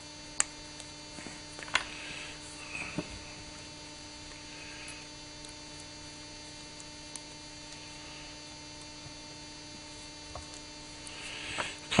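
Steady electrical mains hum, with a few brief faint clicks in the first three seconds from small metal collet parts being handled.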